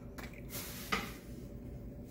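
Electric potter's wheel running with a steady low hum, and wet fingers rubbing on the spinning clay lid, giving a hissing wash from about half a second in. A single sharp click sounds about a second in.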